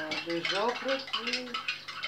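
A teaspoon clinking and scraping against a small white ceramic cup while something is stirred in it, with a person's voice talking over it.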